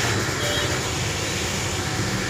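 Steady background noise with a low hum, unchanging and without distinct events.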